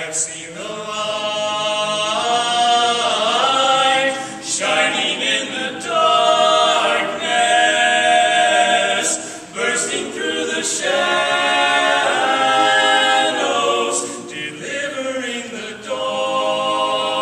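Men's barbershop chorus singing a cappella in close harmony, in long held chords that break briefly between phrases every four or five seconds.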